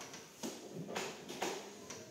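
A few soft thumps, about two a second, in a quiet room.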